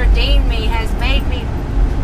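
A woman speaking over the steady low rumble of a bus, heard from inside the passenger cabin.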